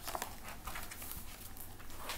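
Paper rustling and light knocks as a large hardcover book is lowered and handled: a quick, uneven series of short rustles.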